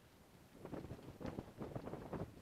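Irregular rustling and crunching from someone walking along a sandy track, with wind on the microphone.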